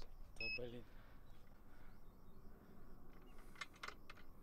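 A single short electronic beep about half a second in, from a digital hanging scale being switched on or reset. After it come faint steady background noise and a few light clicks near the end.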